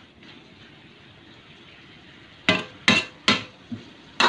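Metal spatula clanking against a steel wok as chicken is stirred: three sharp knocks in quick succession about two and a half seconds in, then a softer one just before the end.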